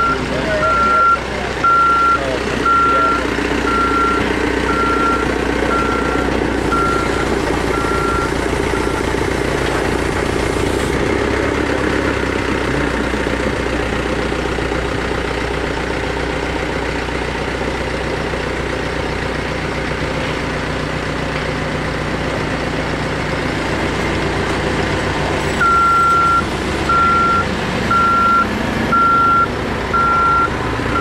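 Heavy equipment's reversing alarm beeping about once a second, with a diesel engine running underneath. The beeping stops about nine seconds in while the engine keeps running, then resumes near the end.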